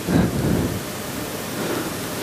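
Steady hiss through a handheld microphone's sound system, with a brief low rumble a moment in.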